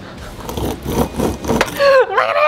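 3D-printed plastic skateboard truck wheels, on printed bearings, rolling along a wooden workbench with an uneven rumble. A voice comes in briefly near the end.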